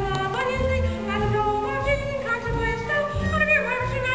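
Women singing a musical-theatre song with vibrato over an instrumental accompaniment, in held, wavering notes.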